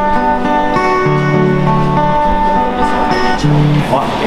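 Amplified acoustic guitar music with held chords and a bass line, playing the instrumental close of a song with no singing. The music stops near the end.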